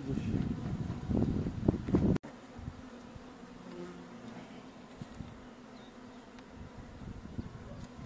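Honeybee swarm buzzing steadily in a plastic barrel as comb is cut out. For the first two seconds loud handling noise and knocks close to the microphone cover it, then cut off abruptly.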